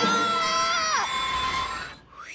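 Several cartoon voices screaming together in alarm: long held screams, one falling away about a second in while another carries on.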